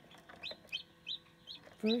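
Newly hatched chick, thought to be a barred rock crossed with a frizzle Polish, peeping: short, high, falling peeps, about three a second.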